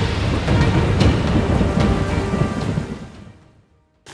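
Thunderstorm sound effects, a low thunder rumble and rain, with music underneath, fading out over the last second or so.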